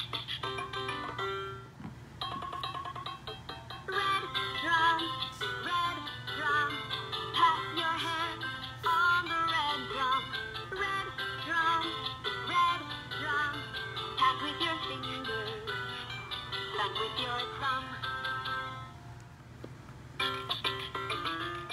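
LeapFrog Learn & Groove Color Play Drum playing an electronic song, with a short break just before two seconds in, after which a busier melody starts.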